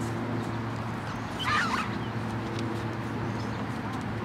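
A single short bird call, wavering in pitch, about one and a half seconds in, over a steady low hum.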